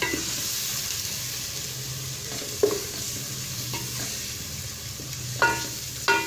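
Tomato and chilli masala sizzling in hot oil in an aluminium pot as a wooden spatula stirs it: a steady hiss with a few knocks of the spatula against the pot, the loudest near the end ringing briefly.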